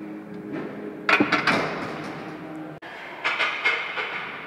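Loaded steel barbell clanking metal on metal, a burst of sharp ringing knocks about a second in as the bar is set into the bench rack's uprights, then another burst of clanks near the end. Background music runs faintly underneath.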